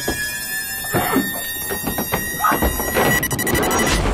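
Horror film score: a steady, high, eerie drone, with a few dull thuds about a second in and again near the end.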